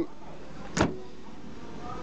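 The boot lid of a Volvo S40 saloon being shut: one short slam about a second in.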